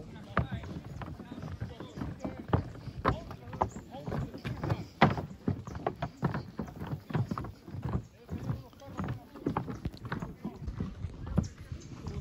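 Footsteps on a wooden plank boardwalk: irregular hollow knocks of shoes on the boards, a few a second, from more than one person walking.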